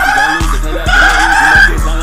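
Hip hop music with deep, booming bass hits and a voice over it, played loud.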